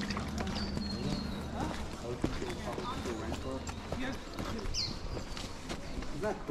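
Footsteps on a dirt trail strewn with dry leaves, with faint talking and a few short, high bird calls.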